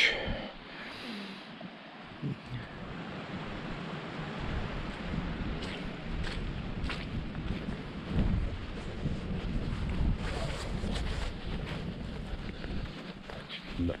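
Wind buffeting the microphone, rising about two seconds in and gusting unevenly, with occasional short rustles and knocks of footsteps through rough moorland grass.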